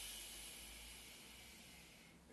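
A man's long, controlled Pilates exhalation through the lips, a steady hiss that fades away over about two seconds as he presses the ring upward.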